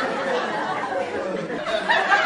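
Several people's voices chattering over one another, no single clear speaker.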